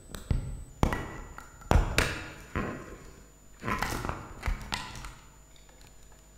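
Irregular thumps and knocks of things being handled on a wooden lectern close to its microphone, about eight separate bumps over the first five seconds, the loudest ones carrying a deep boom.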